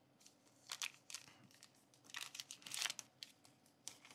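Crinkly plastic wrapper being crumpled and pulled open by hand: a faint scatter of crackles, loudest a little before the three-second mark.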